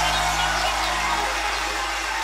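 The tail of a live band's song: a held low electronic chord dies away a little over a second in, leaving a high wash of sound in the hall.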